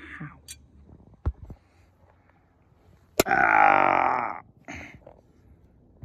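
A man's loud, drawn-out throaty vocal sound lasting a little over a second, past the middle, starting with a sharp click. A dull thump comes about a second in.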